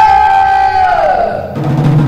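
A voice holding one long high sung note that slides down in pitch about a second in, over Garifuna barrel hand drums that grow louder near the end.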